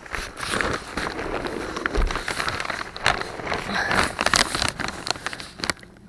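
Irregular rustling, crinkling and scraping with many small clicks, from someone crawling and shifting about in a crawl space under a house.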